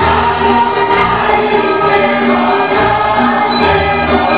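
A group of voices singing a Serbian folk song in chorus, holding long sustained notes as dance music.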